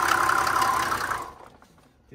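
Mercedes-Benz W126 S-Class straight-six engine idling under the open hood, a steady running sound that fades out about a second and a half in.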